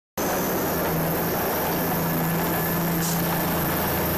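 Tank moving along a gravel track, its engine running with a steady low hum under dense mechanical noise.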